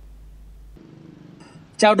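A short pause between news-reading voices: low steady background hum and hiss, with the deepest hum cutting off partway through. A man's voice starts speaking near the end.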